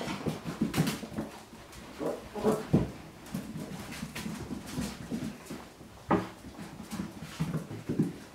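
Young puppies playing and tugging at a towel, giving short whimpers and yips among scuffling and the small clicks of paws and claws on the mat and tile floor. The loudest cries come a little under a second in, around two and a half seconds in and about six seconds in.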